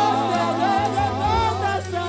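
Gospel worship singing: several voices sustain wavering, vibrato-laden lines over held low accompanying notes.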